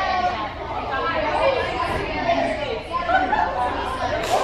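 Indistinct chatter of many voices talking at once: cheerleaders and others milling about in a large gym hall.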